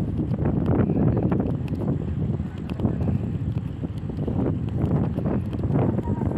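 Wind buffeting a phone's microphone: a loud, gusting low rumble.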